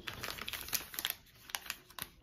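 A person chewing a chili-lime seasoned gummy peach ring close to the microphone: a rapid, irregular run of small mouth clicks and smacks that thins out in the second half.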